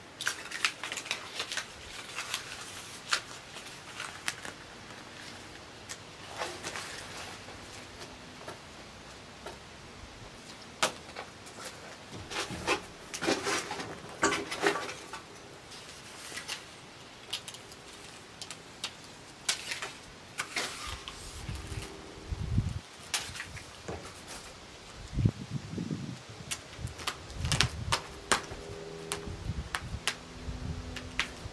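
Self-adhesive window flashing tape being handled and pressed down across the top of a window. Its rustling and crinkling comes with scattered sharp clicks and taps, and a few dull low thumps in the last third.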